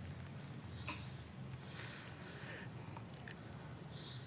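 A woman gulping and swallowing wine under duress, with soft breaths and small mouth clicks over a low steady hum.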